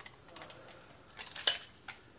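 Metal kitchen tongs clicking and tapping against a steel frying pan, a few light clicks with a quick run of them about one and a half seconds in.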